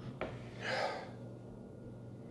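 A man sniffing a beard oil sample held under his nose: a small click, then one sharp inhale through the nose lasting about half a second.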